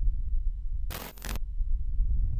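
Logo-sting sound effect: a deep, low rumble that carries through, with one brief, bright burst about a second in.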